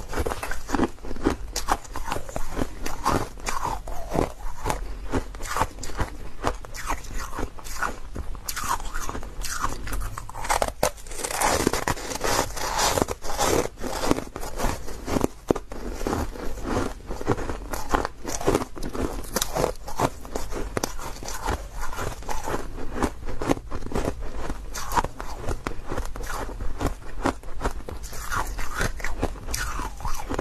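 Ice blocks being bitten and chewed at close range, a dense, unbroken run of crunches and crackles.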